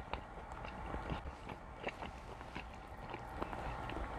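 Chewing food close to a clip-on microphone: a run of small, irregular mouth clicks and smacks at a low level.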